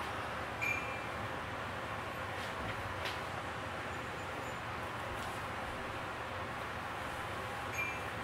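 Steady hiss of room tone, with a couple of brief faint clicks, one early and one near the end.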